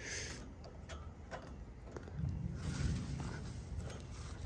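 Light rustling and a few small snaps of dry vine and grass stems being pulled from the louvered metal grille of an AC condenser, with a low rumble from about halfway through.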